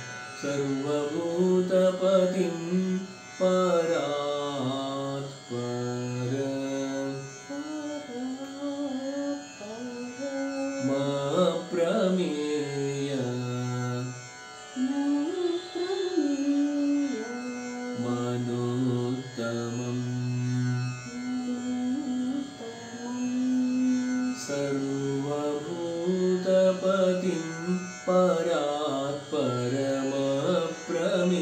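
Devotional chant sung in raga Pilu, held notes joined by ornamental glides, over a steady drone.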